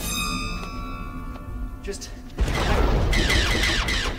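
Sci-fi drama sound effects over score: a bright ringing cluster of tones that fades away over about a second and a half, then a sudden loud burst of noise about halfway through that lasts a second and a half.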